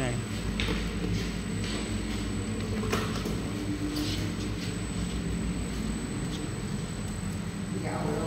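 Rice-noodle sheet steaming machine running: a steady motor hum and low rumble from the drive and conveyor belt, with a few faint clicks and creaks.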